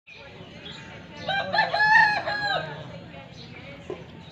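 A rooster crowing once, a cock-a-doodle-doo of a few short rising notes, a long held note and a falling last note, starting about a second and a half in.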